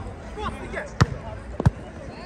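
Two sharp thuds of a football being kicked and played on an artificial-turf pitch, one about halfway through and another shortly after, over spectators' chatter.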